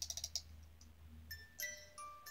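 Wind-up snow globe music box: its key is turned with a quick run of ratcheting clicks, then the mechanism starts playing its tune, single ringing notes coming in about a second and a half in.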